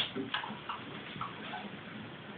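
A few faint, irregularly spaced clicks and taps from handling a nylon-string classical guitar as the player sets her hands in position.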